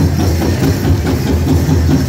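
A powwow drum group pounding a big drum in a steady beat as the singers sing a dance song, with the jingle of the dancers' bells mixed in.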